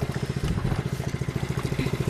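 Fishing boat's engine idling with a steady, fast, even beat.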